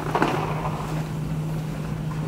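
A steady low hum runs under a brief bump and rattle about a quarter second in, as a metal-framed display bench carrying a plastic dog statue is lifted off the floor.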